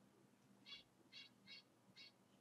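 Near silence with four faint, short, high chirps spaced about a third of a second apart, in the second half.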